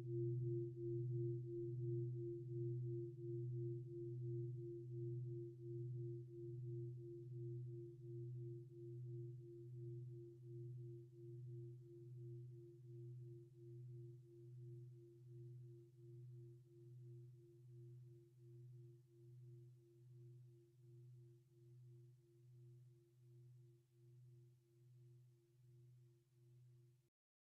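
A struck singing bowl ringing out: a deep hum with a fainter higher overtone, wavering in slow, even pulses as it slowly fades away.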